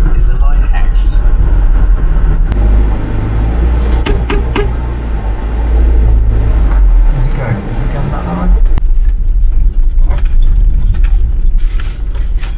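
Campervan driving, heard from inside the cab: a loud, steady low rumble of engine and road noise, with light clinks and rattles throughout.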